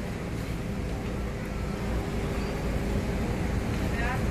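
Street traffic: a steady low rumble of vehicles with a faint, even engine hum.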